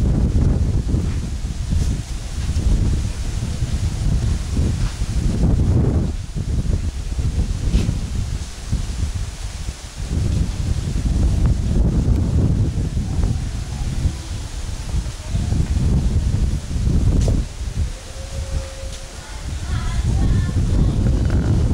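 Wind buffeting the microphone in uneven gusts, a heavy low rumble that swells and drops every few seconds.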